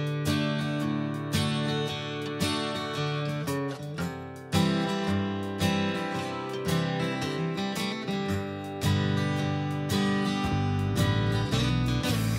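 Background music led by a plucked acoustic guitar, a steady run of picked notes and chords.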